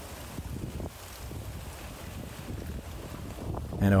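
Wind rumbling on the camera microphone, an uneven low rumble, with a man's voice starting near the end.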